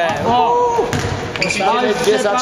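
Players' and spectators' voices calling out in a large gym hall, with a few sharp knocks of a basketball bouncing on the court floor.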